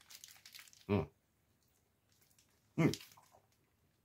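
A man biting into and chewing a soft steamed meat bun, with faint mouth noises in the first second. Two short appreciative 'mm' hums come about a second and three seconds in.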